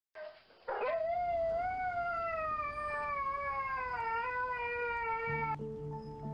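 A husky's single long howl that swoops up at the start, then slides slowly down in pitch for about five seconds. Soft music comes in just as the howl ends.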